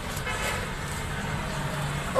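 Steady road-traffic noise with a low engine hum, and a faint horn briefly about a quarter to half a second in.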